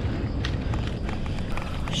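Mountain bike rolling over a dirt and rock trail, picked up by a camera on the bike: tyre noise and irregular rattles and knocks from the bike over a steady low rumble.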